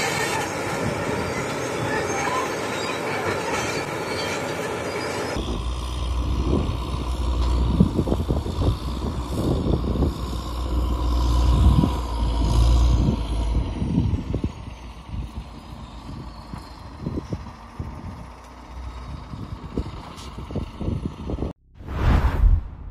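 Crawler bulldozer working, its steel tracks squealing and clanking over the engine. After about five seconds this cuts to a low, gusty rumble of wind buffeting the microphone, which eases off partway through. A brief whoosh comes at the very end.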